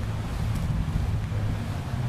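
Wind rumbling on the camera microphone, a steady low rumble with a faint hiss above it.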